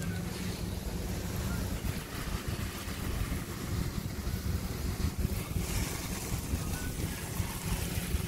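Water from a garden hose spraying steadily onto soil and leafy plants, a continuous rushing hiss, with a low rumble of wind or handling on the phone's microphone.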